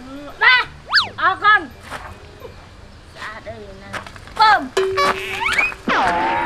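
Cartoon-style comic sound effects over a woman's talk: a quick whistle-like sweep up and straight back down about a second in, then near the end a held tone with a slide-whistle glide rising over it.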